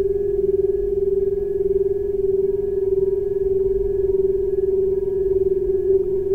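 Crystal singing bowl sounding one steady, slightly wavering held tone, with faint higher overtones and a low hum beneath.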